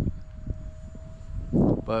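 Electric ducted fan of a 3D-printed RC F-35C jet heard in flight as a thin, steady whine, over wind rumble on the microphone.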